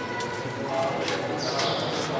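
Sharp metallic clinks about a second apart, each with a short high ring, over lingering ringing tones and a murmur of voices.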